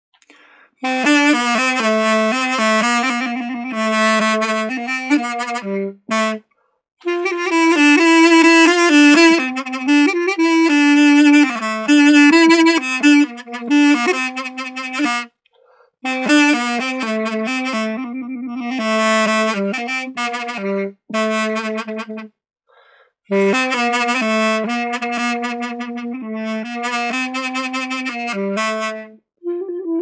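Mey, the Turkish double-reed wind instrument, in the key of A, playing a folk-tune melody in several phrases with short breaks between them. The phrases are decorated with sektirme, quick grace-note flicks and other ornaments played as exercises.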